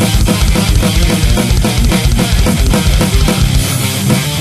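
Heavy metal music: distorted electric guitars over fast, evenly spaced kick drum beats. The kick drum drops out near the end.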